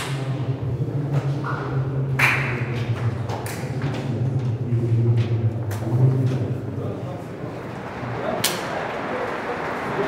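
Indistinct voices echoing in a corridor over a steady low hum, with a few sharp knocks about two, three and a half, and eight and a half seconds in.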